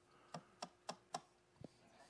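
Four faint, quick clicks a little over a quarter second apart, then one softer click, over a faint steady hum.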